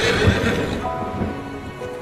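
Rain falling heavily, easing over the first second, as sustained music chords come in about a second in.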